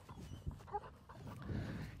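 Faint sounds of a Belgian Malinois working at heel beside its handler, with a short faint whine under a second in.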